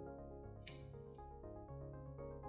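Background music with a keyboard melody, and over it a short sharp rasp about two-thirds of a second in and a fainter one just after a second: vinyl electrical tape being pulled off the roll and torn while wrapping a wiring harness.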